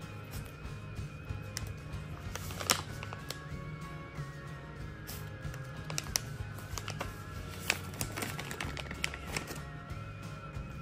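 Background music with a steady low band, over sharp crackles and clicks from a plastic treat pouch being handled, the loudest about three seconds in.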